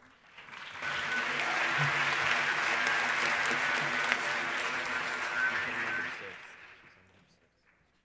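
Audience applauding in a large hall: the clapping swells in about half a second in, holds for around five seconds, then dies away near the end.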